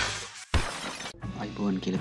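Logo-intro sound effect: a sudden crash like breaking glass about half a second in that dies away within about half a second. Soft guitar background music follows, and a man starts speaking at the very end.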